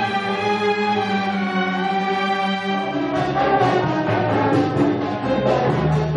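Youth symphony orchestra playing, bowed strings with brass: held chords for about three seconds, then a busier, moving passage.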